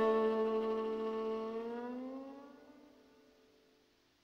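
Sustained chord from bowed strings on an album recording, several notes sliding upward as the whole chord fades out to silence near the end.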